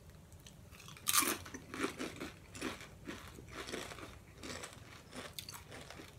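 Two people biting into and chewing Doritos Blaze tortilla chips. A loud crisp crunch comes about a second in, followed by a run of smaller chewing crunches that thin out near the end.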